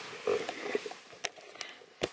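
Camera handling noise as the camera is moved and set up, with a short low sound near the start and then a few sharp clicks.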